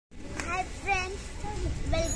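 A young boy's voice: a few short, high-pitched spoken sounds, over a low background rumble.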